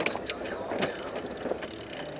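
Sailboat winch being cranked, its pawls clicking in a few irregular clicks as the mainsail outhaul line is hauled back in.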